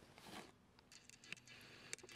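Near silence in a quiet space, with a few faint, short clicks and light rustling.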